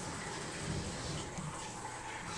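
Steady, even hiss of background room noise with no distinct events.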